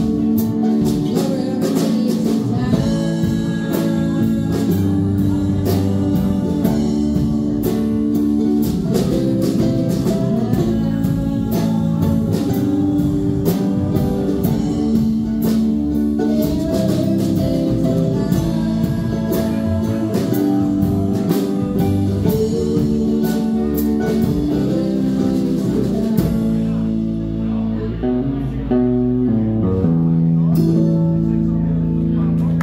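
Small live acoustic-electric band of ukulele, electric guitar, mandolin, upright bass and drum kit playing a song together. About 26 seconds in the drums and cymbals drop out and the strings play on alone toward the song's close.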